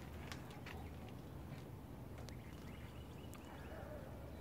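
Faint outdoor ambience: a steady low rumble with a few faint short ticks scattered through it.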